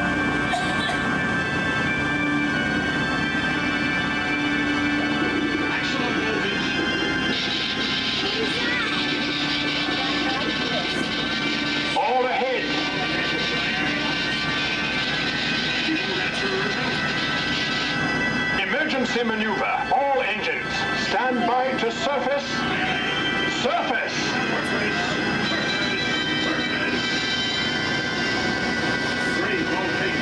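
Submarine dark-ride soundtrack through the cabin speakers: dramatic music and sound effects over a steady hum. There are louder, busier bursts about twelve seconds in and again around twenty seconds in.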